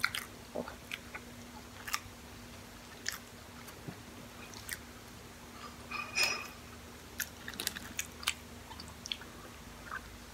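Close-miked chewing of a cheeseburger and chicken sandwich, with scattered short wet mouth clicks and a louder cluster of sounds about six seconds in, over a faint steady hum.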